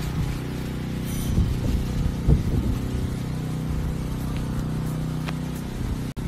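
A motor running with a steady low hum throughout, with a few short knocks and rustles between about one and two and a half seconds in.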